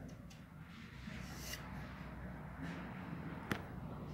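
Faint low background rumble with one sharp click about three and a half seconds in.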